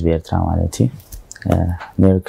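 Speech only: a person talking in short phrases with brief pauses.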